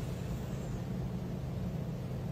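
Room tone in a pause with no speech: a low, steady hum with faint even background noise and no distinct events.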